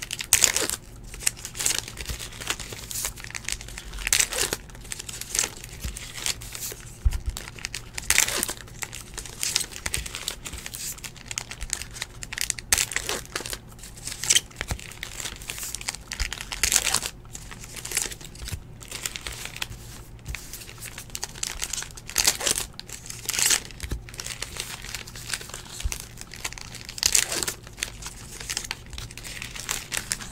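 Baseball trading cards being handled and sorted into stacks on a table: dry rustling of card stock in quick, irregular strokes, some louder than others.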